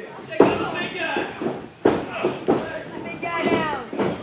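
Two heavy thuds about a second and a half apart as wrestlers' bodies hit the ring mat, with shouting voices around them.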